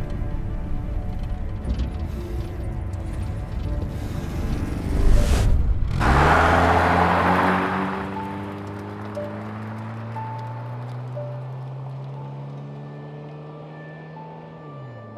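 Film score and sound design: a dense low rumble builds for about six seconds and briefly cuts out, then a burst of noise hits and gives way to slowly rising synth tones that settle into a long held chord.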